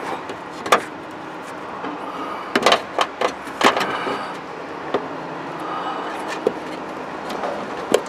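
Hand working a plastic brake-light bulb socket up into the tail light housing from underneath, a tight fit: scattered sharp plastic clicks and knocks over a steady background hiss.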